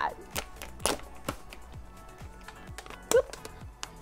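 Plastic foil blind-bag packaging crinkling and crackling in a few sharp bursts as hands try to pull it open by hand and fail to tear it.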